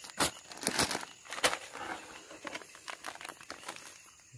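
A plastic fertilizer packet crinkling and rustling as it is handled, with an irregular run of sharp crackles and clicks, loudest in the first second and a half.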